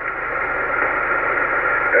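Steady hiss of band noise from an HF transceiver's speaker, tuned to upper sideband on the 15-metre band, with no voice on the signal.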